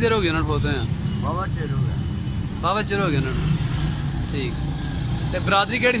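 A man's voice in short spoken phrases with pauses between them, over a steady low rumble.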